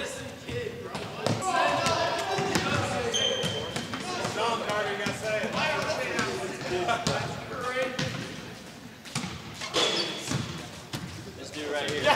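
Basketballs bouncing now and then on a hardwood gym floor, with voices talking and laughing around them.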